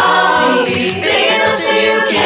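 Mixed-voice school chorus singing a cappella in harmony, holding chords, with a short break about a second in before the next phrase starts.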